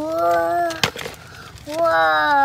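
A child's voice holding a long, rising wordless sound, then a sharp click just under a second in, and the voice starting again near the end.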